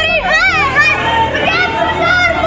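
Women's raised, high-pitched voices in an agitated argument, one voice pleading and shouting over the others.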